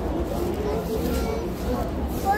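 Indistinct background voices over a steady low rumble of store noise, with no clear words.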